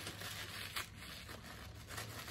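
Faint rustling and scraping of white paper wrapping being handled and pulled open around a bag's shoulder strap, with a couple of short crinkles about a second in.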